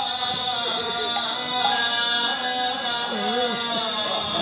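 Devotional nam kirtan music: steady held instrumental tones under a singing voice that glides up and down in pitch, with a short metallic clash about halfway through.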